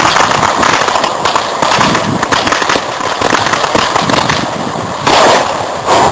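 Firecrackers crackling in a dense, irregular run, with a louder burst about five seconds in.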